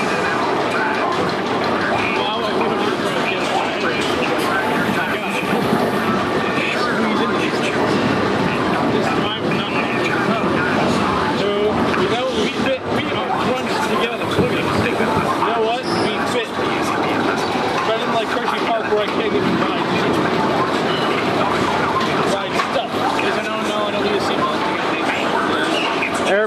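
Primeval Whirl spinning coaster car running, with the riders' voices going on over the ride noise throughout.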